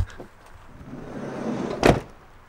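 A Fiat Ducato camper van's sliding side door runs along its track with a building rumble and slams shut near the end, the slam the loudest sound. A dull thump comes at the very start.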